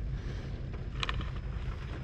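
Steady low rumble and hiss inside a parked car's cabin, with one brief rustle about a second in.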